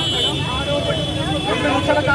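Overlapping voices of several people arguing in the street, with traffic noise underneath.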